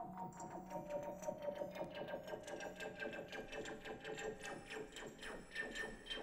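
Marimba played with mallets in a fast, even run of repeated strokes over held, steady tones.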